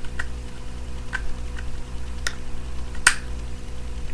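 Plastic joints and panels of a Transformers Titans Return Overlord figure clicking as they are folded and rotated into place: about five sharp separate clicks, the loudest about three seconds in, over a steady low hum.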